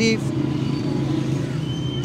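An engine running steadily at idle: a low, even hum with no change in pitch.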